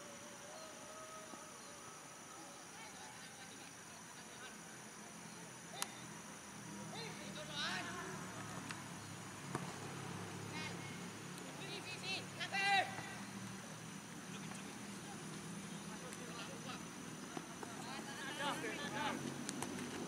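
Football match sounds on a grass pitch: players shouting short calls to one another in several bursts, loudest about two-thirds of the way through, with a couple of sharp ball kicks.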